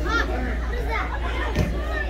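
Several children's voices chattering and calling over one another in a large room, with a steady low hum underneath. A single thump about one and a half seconds in.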